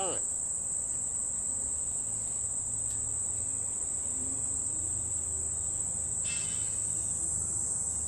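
Insects droning in one continuous, steady high-pitched tone, with a faint low rumble underneath through the middle seconds.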